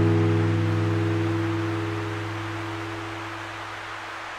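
The last strummed chord of acoustic-guitar background music, ringing out and slowly fading away over a steady hiss.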